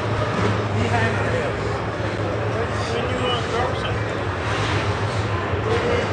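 Background chatter of people in a large exhibition hall over a steady low hum.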